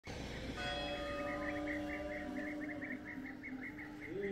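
A church bell struck once, its tones ringing on and slowly fading. A small bird chirps in quick repeated notes over it.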